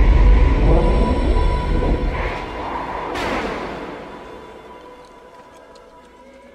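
Film sound effect of magical flight: a loud rushing whoosh with a deep rumble and music, a bright swish about three seconds in, then fading away.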